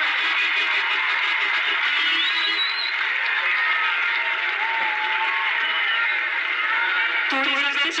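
Many voices singing together, a crowd or congregation, dense and echoing. Near the end a man's voice comes in over the microphone.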